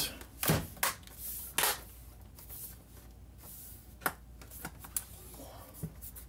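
MacBook Pro A1150's aluminium case parts being pressed and snapped back into place by hand: scattered sharp clicks and taps, a cluster in the first two seconds and more from about four seconds in, with soft handling between.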